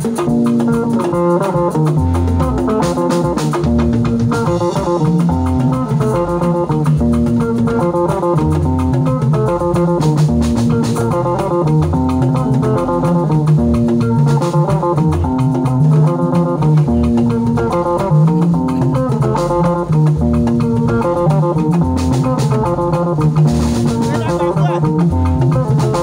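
Live band music: an electric guitar picks a repeating melodic riff over a stepping bass line, with a drum kit and a set of tall hand drums keeping the beat.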